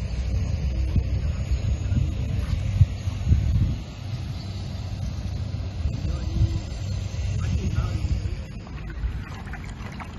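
Wind buffeting the microphone: a low, steady rumble that swells and dips in gusts, loudest a few seconds in.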